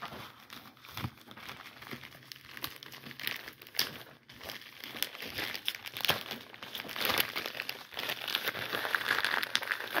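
Packaging crinkling and crackling in irregular bursts as a mailed package of trading cards is unwrapped by hand, busier and louder in the second half.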